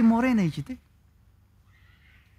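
A man's voice preaching, trailing off on a drawn-out syllable less than a second in, followed by a pause of near silence with only faint room noise.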